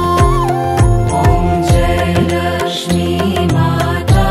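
Hindu devotional aarti music: a melody line over regular drum strokes, about two a second.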